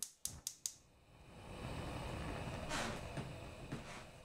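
Editing sound effect under an animated glitch title card: four quick clicks in the first second, then a faint steady hiss with a brief swish near the middle.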